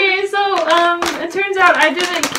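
A woman talking in a lively, up-and-down voice.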